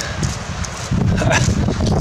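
Rustling and scraping of dry leaf litter and soil as a small shed roe deer antler is pulled up out of the ground by hand, with close handling noise; it grows louder about a second in.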